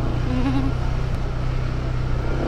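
Motorcycle engine running steadily with wind and road noise while riding.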